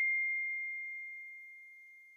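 The fading ring of a single bell-like ding sound effect: one steady high tone dying away slowly to near silence by the end.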